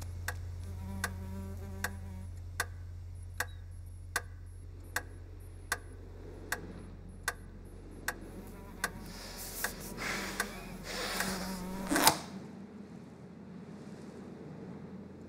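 Steady, even ticking, a little more than one tick a second, over a low hum. Near the end a rising rush of noise swells into one loud hit, and the hum cuts off with it.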